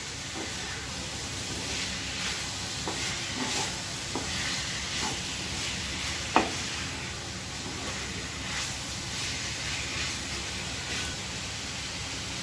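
Chicken pieces in masala sizzling as they fry in a kadai, stirred and scraped by a wooden spatula. Near the middle there is a single sharp knock.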